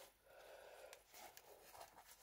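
Near silence: room tone, with faint soft rustles and ticks as a trainer is handled.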